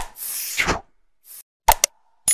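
Animated like-and-subscribe graphic sound effects: a sharp pop, then a short swishing rush of noise, then two quick clicks near the end.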